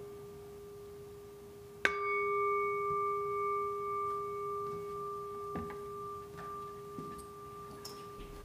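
Singing bowl struck about two seconds in, ringing with a low tone and higher overtones that fade slowly; a fainter strike just before is already ringing at the start. A couple of soft knocks sound under the ring near the end.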